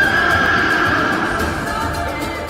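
A horse neighing, one long high call, over dramatic background music.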